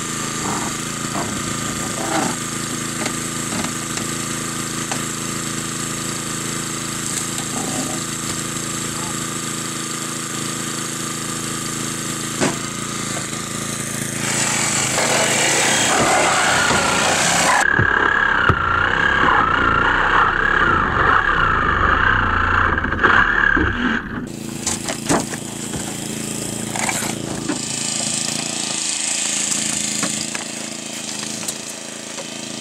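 Small gasoline engine of a hydraulic rescue-tool power unit running steadily, with a few sharp metal clanks. About halfway through the sound grows louder, with a wavering whine for several seconds.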